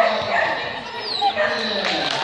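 A dog barking over background voices, with a sharp, loud bark right at the start.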